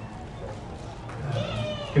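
A small child's brief high-pitched whining cry, bending in pitch, over low room murmur in a large hall, starting just past halfway through.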